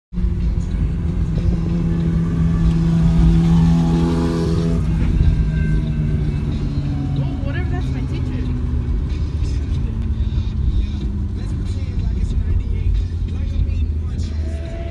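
Car cabin rumble from road and engine while riding in the back seat, steady and low throughout, with voices underneath.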